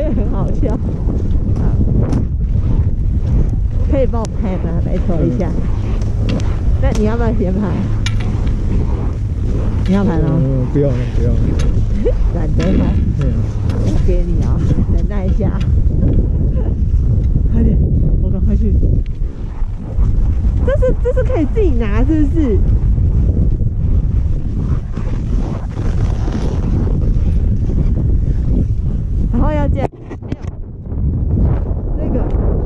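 Wind buffeting an action camera's microphone: a steady low rumble, with voices talking in a few short stretches over it.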